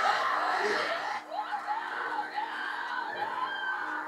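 Television drama soundtrack playing in the room: a dense stretch of yelling, crowd-like voices that cuts off a little over a second in, then quieter wavering voice-like sounds over a steady low hum as music comes in.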